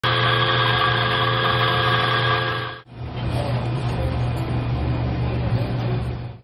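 Electric coffee grinder motor running with a steady whine and hum as it grinds beans into an espresso portafilter. It breaks off abruptly just before the three-second mark, followed by a lower, noisier steady hum of an espresso machine's pump as a shot brews.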